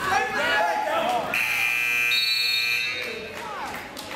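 Shouting voices, then the gym's wrestling timer buzzer sounds one steady tone for about a second and a half, signalling the end of the period.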